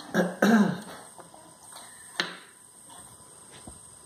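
A man clearing his throat with coughs: two close together at the start, then a single shorter one about two seconds in.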